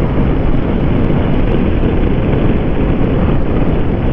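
Steady mix of wind rush on the microphone and a Kawasaki Versys 650's parallel-twin engine cruising at highway speed, about 85 km/h; a dense, even rumble heaviest in the low end.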